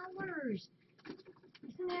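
A woman's voice: a drawn-out vocal sound falling in pitch in the first half second, then quiet until she starts speaking again near the end.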